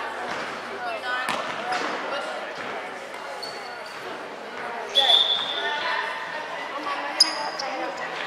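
Basketball game in an echoing gym: a basketball bouncing on the hardwood floor and voices of players and spectators. A few short, sharp high squeaks stand out, the loudest about five seconds in and another near seven seconds.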